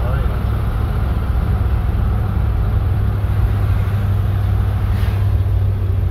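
Inside the cabin of a moving 1958 Edsel Citation: a steady low rumble from its V8 engine and the road, holding an even level.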